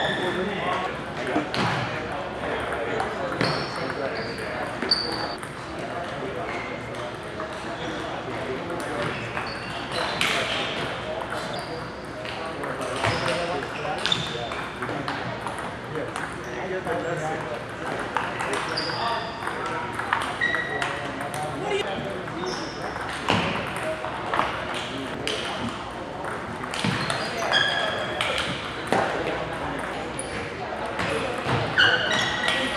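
Table tennis balls being hit and bouncing on tables across a large hall: sharp clicks come irregularly throughout, mixed with short high squeaks and the murmur of voices.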